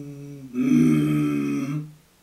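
A man's voice humming a steady low note, then about half a second in turning into a louder, raspy throat growl on the same pitch, held for over a second. It is the vocal growl that is hummed or growled into a saxophone to give it a dirty rock-and-roll tone, here sounded without the horn.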